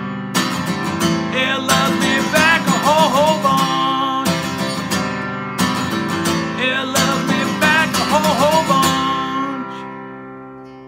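Acoustic guitar strummed in chords, playing out the end of a song; the last chord is left ringing and fades away over the final second or so.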